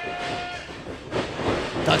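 Pro wrestlers running across the ring, their boots thudding on the canvas-covered ring boards and growing louder from about a second in. A held high note sounds in the first half-second.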